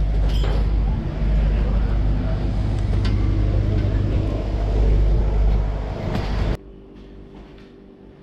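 Loud, steady low rumble of an engine running close by, which cuts off abruptly about six and a half seconds in, leaving quiet room tone with a faint steady hum.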